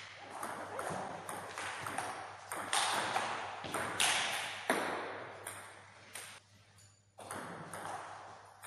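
Table tennis rally: the ball clicks off the bats and the table in quick succession, each hit echoing in a gym hall. The play drops away briefly about six and a half seconds in, then the hits resume.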